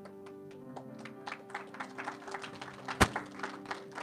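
Soft live worship-band music: a held keyboard chord with guitar notes picked over it. A single sharp thump stands out about three seconds in.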